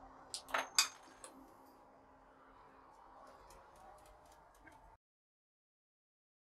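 A quick run of sharp clicks and clacks from a homemade wrist-mounted coil-gun web shooter being triggered, the loudest about a second in with a faint high ring after it. A few light ticks follow a couple of seconds later.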